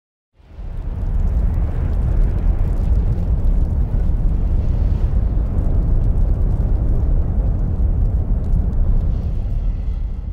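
A deep, dense rush of fire-like noise, an intro sound effect of a blaze, fading in over the first second and holding steady before it starts to fade near the end.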